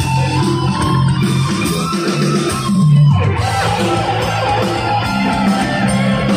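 Live rock band with electric guitar and bass playing loudly; about three seconds in, one note glides steeply down in pitch.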